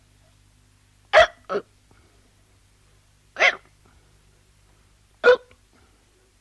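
A person hiccuping three times, about two seconds apart. The first hiccup is followed closely by a softer second sound.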